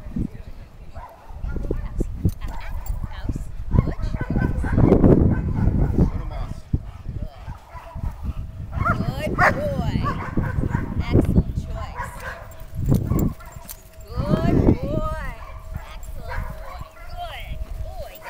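German shepherd barking in repeated bursts, worked up during Schutzhund protection (bite) work.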